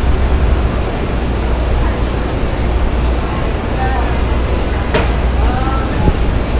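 Street traffic: a steady low rumble of passing vehicles, with faint voices of passers-by about two thirds of the way in.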